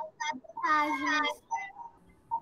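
A child's voice over a video call, drawing out a word in a sing-song tone for under a second, starting about half a second in, with a few short vocal fragments around it.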